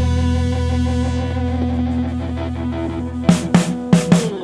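Live rock band: a held chord on guitar rings and slowly fades, then a few drum hits come in near the end.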